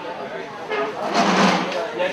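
Voices talking in a crowded hall, with a loud burst of shouting a little over a second in.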